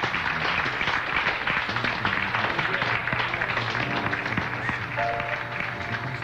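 Audience applauding after an introduction, a dense steady clatter of clapping that thins toward the end. About four seconds in, sustained instrument notes at several pitches come in beneath it.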